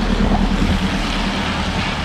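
Heavy rain pouring down with a steady hiss, and a car driving past on the wet road with its tyres swishing.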